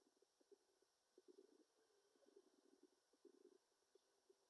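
Near silence: faint, irregular low crackle over background hiss.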